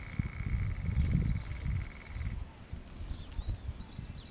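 Outdoor ambience: a low, uneven rumble with a steady high whine that stops a little past halfway. Faint, high chirps of small birds come in through the second half.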